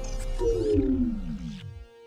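Electronic robot power-down sound: a whine that drops steadily in pitch and fades out over about a second and a half, with a brief glitchy crackle just before it. It is the sound of a robot's systems shutting down after a memory core failure.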